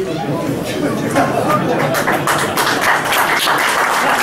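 A hall audience applauding, building up from about half a second in into dense, sustained clapping.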